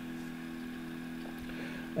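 A steady low background hum with room tone, unchanging throughout.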